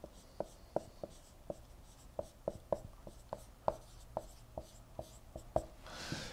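Dry-erase marker writing on a whiteboard: a faint, uneven string of short strokes, about three a second, as letters are written out.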